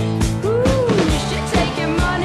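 Recorded rock song with a full band: a drum kit keeps a steady beat under bass and electric guitar, and a note bends up and back down about half a second in.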